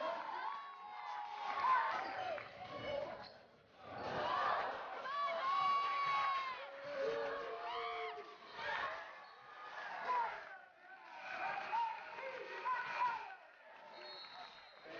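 Crowd noise in a basketball gym: many spectators shouting and cheering at once, swelling and fading, with two brief dips.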